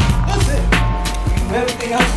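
Background music with a beat: sustained tones under repeated drum hits.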